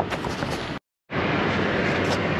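Steady noise with a low rumble, cut by a brief dead-silent gap just under a second in; after the gap, a louder, even rumble and hiss of a semi truck's diesel engine idling to build air pressure for the trailer's air slide.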